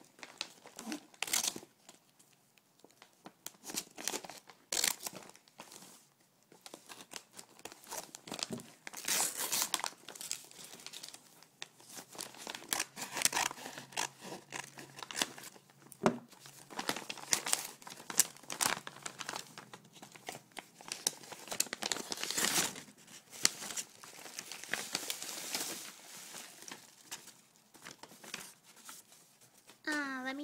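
A mail package being torn open, its wrapping crinkling and tearing in irregular bursts throughout.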